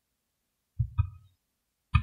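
Computer mouse clicking: two quick clicks close together a little under a second in, and another click near the end.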